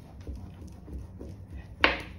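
Metal spoon rubbed back and forth over the back of paper on an inked lino block, a soft, uneven rubbing in repeated strokes. The spoon is burnishing the paper to press the ink from the block onto it.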